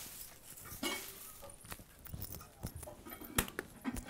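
Faint household sounds: a broom sweeping a floor and metal water vessels being handled, with a few scattered clinks and knocks, the sharpest about three and a half seconds in.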